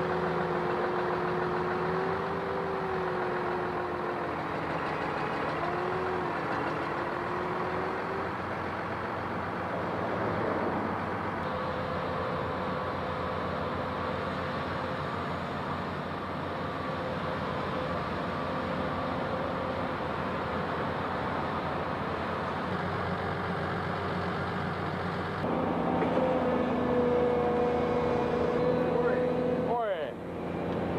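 Diesel engine and hydraulics of a Doosan crawler excavator running steadily while it digs out a ditch, with a whine whose pitch shifts a little as the arm works. From about 25 seconds in the engine sound gets louder and changes.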